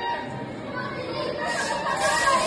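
Several people's voices talking over one another in a large hall. From about one and a half seconds in, a steady hiss joins them: a powder fire extinguisher being discharged.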